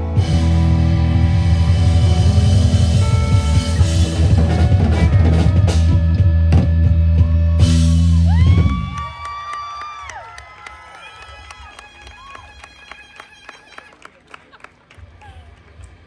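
Live rock band (electric guitars, bass guitar and drum kit) playing loudly, then stopping together about eight and a half seconds in. After the stop, an electric guitar's sustained notes ring on quietly, bending up and down in pitch and fading.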